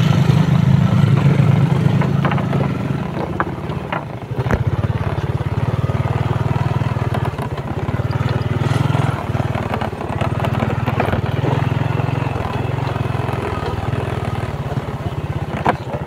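Small motorcycle engine running steadily as it is ridden along a rough dirt track. It eases off briefly about four seconds in, and there are a few knocks along the way.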